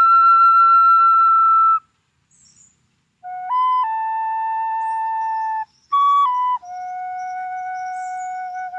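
Wooden flute playing a slow melody of long held notes. A high note is held for nearly two seconds and then breaks off. After a pause, a short phrase steps up and settles on a held note, and after a brief break a final low note is held steadily.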